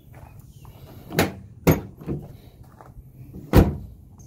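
A new tailgate handle on a 1999–2006 Chevrolet Silverado being worked to test it, its handle and latch making four sharp clunks, the last near the end the loudest.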